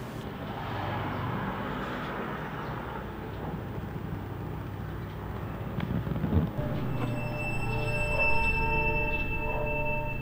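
Ambient film score: a low, steady rumbling drone, with a soft thump a little past six seconds, joined about seven seconds in by sustained high ringing tones.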